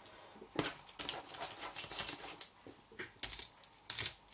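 Tea lights in thin aluminium cups being picked up, turned and set down against each other on a craft mat: scattered light clicks and clinks at irregular spacing.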